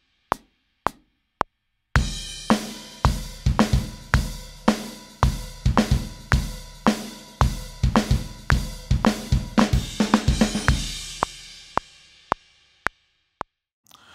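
A metronome clicks about twice a second. Then a live, multi-miked rock drum kit (kick, snare, hi-hat and cymbals) comes in and plays along with the click for about nine seconds. The drums stop, the cymbals ring out, and the click carries on alone; the playing is not bad, but a little shaky against the click.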